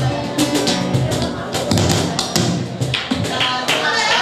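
Live flamenco guitar, played with sharp strummed strokes over low thumps. A singing voice comes in near the end.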